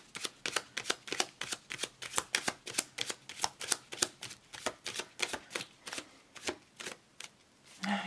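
A deck of tarot cards shuffled by hand: a quick, even run of card slaps, about four or five a second, that thins out and stops about seven seconds in.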